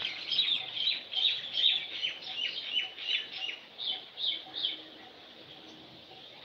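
Small birds chirping: a rapid, busy run of short high chirps that dies away about five seconds in.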